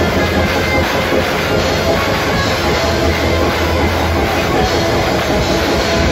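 Heavy metal band playing live: distorted electric guitars, bass and a drum kit, loud and dense with a driving rhythm.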